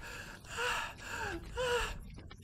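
Three short, breathy, pained gasps from a voiced animated creature, each falling in pitch.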